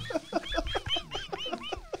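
Hard laughter in a rapid run of short, high-pitched pulses, about six a second, breaking off abruptly near the end.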